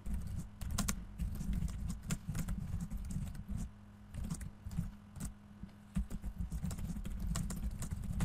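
Typing on a computer keyboard: a quick, uneven run of key clicks with a faint steady low hum underneath.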